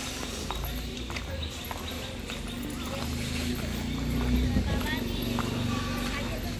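Footsteps in sandals clicking irregularly on a paved courtyard, with voices in the background.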